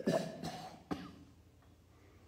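A person coughing: a couple of coughs at the start and one more short, sharp cough about a second in.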